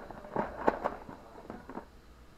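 A handful of sharp crackles and snaps from a packet of dry noodles being handled and broken, spread over about a second and a half.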